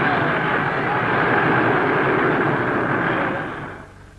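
A large crowd of Zulu warriors chanting and shouting together: a steady, loud roar of many voices that fades out near the end. In the scene the chant is taken to be a cry of 'death'.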